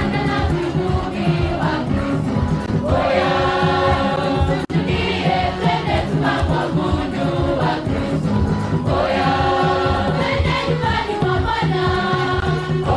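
Choir singing a gospel song over a steady beat, with a momentary dropout about halfway through.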